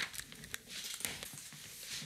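Faint rustling with a few scattered light clicks, a person moving about close to the microphone.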